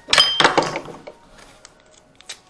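Adhesive tape pulled off the roll in a short, loud screeching rip lasting about half a second, followed by a few faint ticks of the tape and cardboard box being handled.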